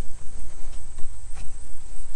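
Crickets trilling in one steady, unbroken high tone, over a low rumble and a few faint ticks.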